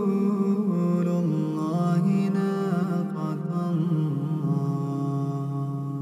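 A man's voice reciting the Quran in slow melodic tajweed, drawing out long held notes that step up and down with small ornaments. It fades gradually toward the end.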